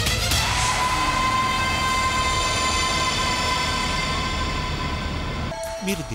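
Dramatic background score: a sharp hit, then a sustained synthesizer chord held for about five seconds, cut off abruptly near the end.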